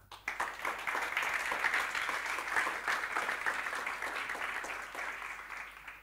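Audience applauding: many hands clapping together, swelling quickly just after the start and tapering off toward the end.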